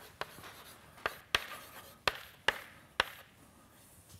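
Chalk writing on a blackboard: about six sharp taps as the chalk strikes the board, with faint scratching between the strokes.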